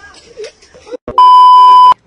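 A loud electronic censor bleep: one steady, pure beep tone lasting under a second, starting just over a second in and cutting off abruptly.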